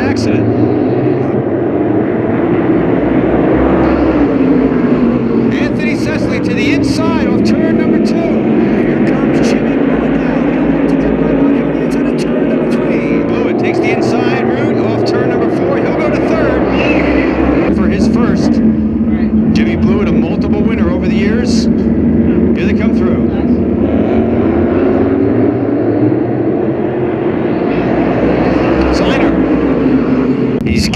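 A field of V8-powered modified race cars racing in a pack, their engines running loud and continuous, the pitch rising and falling again and again as the cars accelerate down the straights and lift into the turns.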